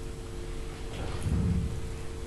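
Rustle and low rumble of clothing rubbing on a clip-on lapel microphone as its wearer gets up from a chair, swelling about a second and a half in, over a steady electrical hum.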